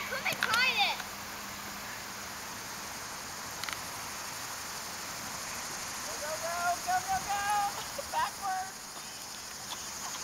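Girls' high-pitched shrieks in the first second, then a girl's voice calling in drawn-out, rising tones about six to eight seconds in. Under them runs a steady high hiss that fits a chorus of summer insects.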